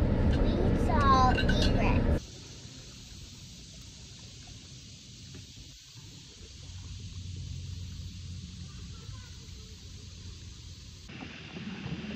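Low, steady rumble inside a car cabin with a brief voice, cut off suddenly about two seconds in. After that comes a faint, steady hiss of outdoor background noise that swells slightly midway.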